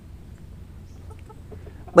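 Low background noise: a steady low hum with a few faint, short blips scattered through it.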